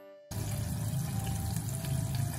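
Starch-coated chicken karaage pieces deep-frying in oil: a dense, steady sizzle that starts abruptly about a third of a second in, after a few notes of background music. This is the first fry, at a lower oil temperature.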